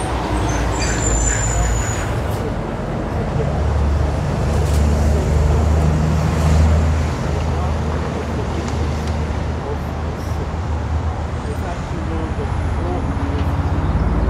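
Road traffic on a nearby road: a steady low rumble that swells as a vehicle passes about halfway through, then eases off.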